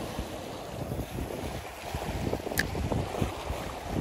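Wind buffeting the microphone over the sea washing against shoreline rocks, with one short sharp click about two and a half seconds in.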